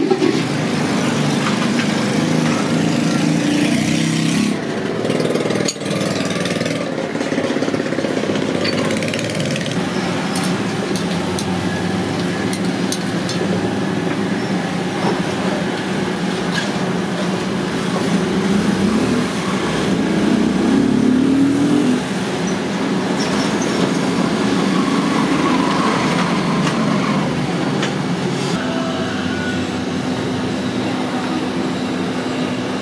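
Steady mechanical running of a melting furnace's blower and burner, a continuous drone with a low hum that shifts slightly in pitch.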